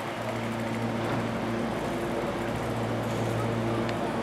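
Meitetsu 300 series electric train standing at a platform, its onboard equipment giving a steady low hum with several even overtones. A faint click comes near the end.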